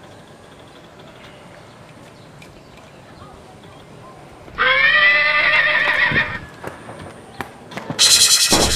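A horse's neigh: one long, loud call about halfway through, over quiet outdoor background, followed by a few faint knocks.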